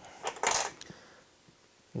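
A brief light clink and rustle of small metal fly-tying tools being handled, about half a second in.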